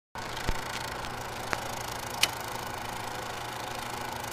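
Steady hiss and low hum of an old-film style noise effect, with three sharp pops at irregular moments.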